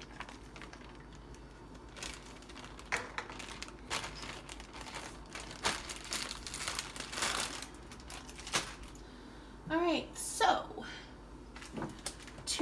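Dry shredded cabbage coleslaw mix rustling and crinkling as it is scooped with a measuring cup and tipped into a plastic container, with scattered light clicks and taps, busiest a little past the middle.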